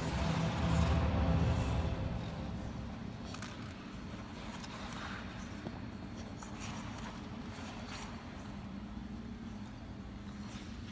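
Ice skate blades scraping and gliding on rink ice in short intermittent strokes over a steady low rink hum, with a louder low rumble in the first two seconds.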